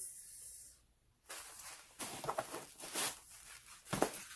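Rustling from fabric zip pouches being handled, in a few short bursts.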